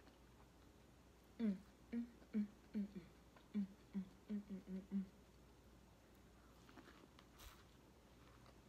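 A woman humming a quick run of about ten short closed-mouth "mm" sounds, rising and falling in pitch, while eating corn on the cob. This is followed by faint chewing and a sharp bite near the end.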